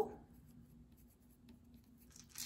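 Pencil writing on paper: faint, scattered scratching strokes as a label is written.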